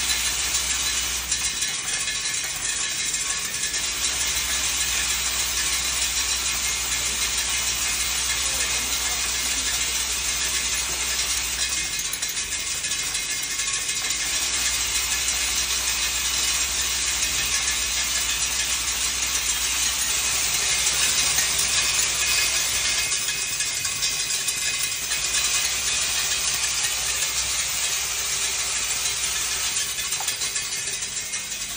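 Automatic nail-sorting machine running steadily: a dense metallic rattle of nails in the vibratory bowl feeder and on the rotary inspection disc, over a low hum that cuts out a few times.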